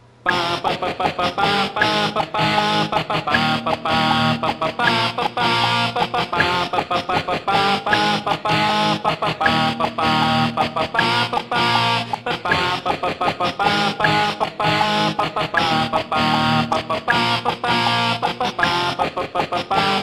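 Electric-guitar power chords generated in real time by the Voice Band iPhone app from a man's singing into the phone. The chords play as a riff of short, quickly repeated strikes that starts abruptly and runs on steadily.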